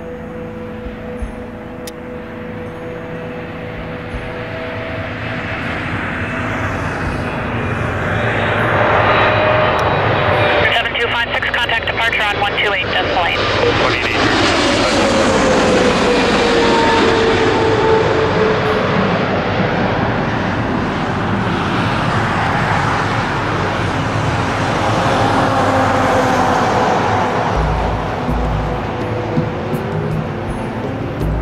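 Boeing 777-300ER's twin GE90 turbofans on final approach, the roar growing louder as the jet comes in low overhead. The engine whine drops in pitch as it passes about halfway through, then the rumble carries on as it moves off toward the runway.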